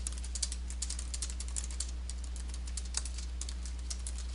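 Typing on a computer keyboard: a quick, irregular run of key clicks, over a steady low hum.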